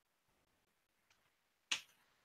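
A quiet room broken near the end by one sharp click that dies away quickly, with a fainter tick shortly before it.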